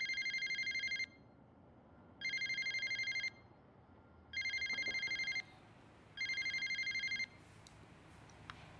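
Mobile phone ringing with a fast-trilling, old-style phone-bell ringtone: four rings about a second long, roughly two seconds apart, with an incoming call.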